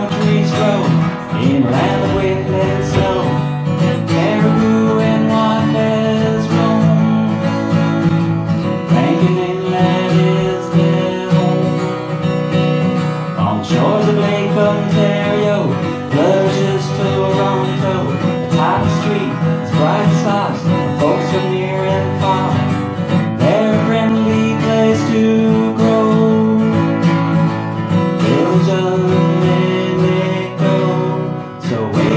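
Acoustic guitar strummed steadily in a live performance of an upbeat folk-style song.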